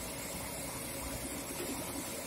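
Stone atta chakki (small stone flour mill) running and grinding grain into flour: a steady, even noise with a low rumble.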